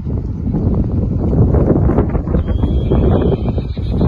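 Wind buffeting the microphone: a loud, low, ragged rumble that builds over the first second and keeps gusting.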